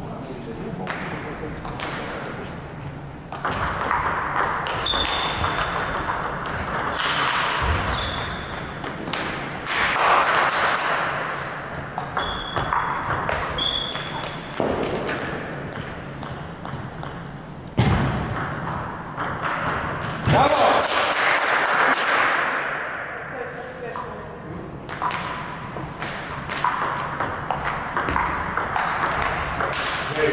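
Celluloid-type table tennis ball struck by rubber bats and bouncing on the table in rallies: short, sharp pings and knocks at irregular intervals, over a background of voices in the hall.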